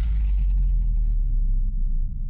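Deep, steady bass rumble from a title-sequence sound effect: the tail of a whoosh and boom, with its higher hiss fading away while the low rumble holds.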